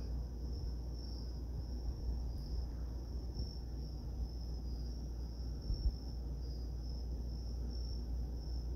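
An insect trilling steadily, one high-pitched continuous tone that pulses slightly, over a low steady hum.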